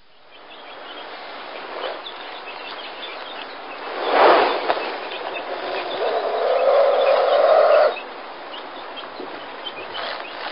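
Outdoor ambience with small scattered bird chirps. About four seconds in comes a loud, sudden sound, then a steadier mid-pitched sound that lasts about three seconds and cuts off abruptly.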